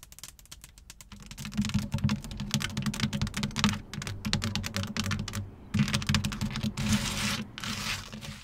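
Fast tapping with long fingernails on a Jeep's textured plastic running board: a dense run of quick clicks like typing, with a low thud under them, breaking off briefly about two-thirds through. A few sparse, lighter taps on the window glass come first.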